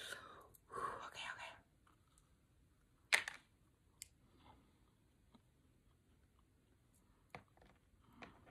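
Quiet mouth sounds of biting into and chewing a caramel-and-cookie-crumble-topped doughnut, with one short, sharp noisy sound about three seconds in and a few faint clicks later.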